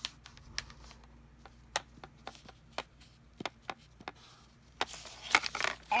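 Felt-tip marker tapping and scratching on a sheet of paper laid on a hard surface, a scattering of sharp ticks. Near the end the paper sheet is handled and lifted, rustling.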